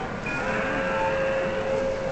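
MTH model train's onboard sound system blowing a steady horn note for about a second and a half, over a continuous background din.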